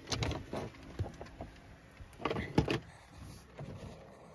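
Handling noise: a few knocks and rustles as the phone is moved inside the van and pushed against the sheer curtain, loudest about two and a half seconds in, over the steady faint hum of a small electric fan.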